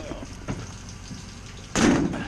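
Steel mesh trailer ramp gate being lowered, with a faint knock about half a second in and then a loud metal clank as it lands on the asphalt near the end.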